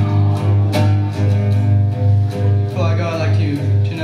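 Nylon-string classical guitar being fingerpicked, with a low bass note repeating about twice a second under plucked chords.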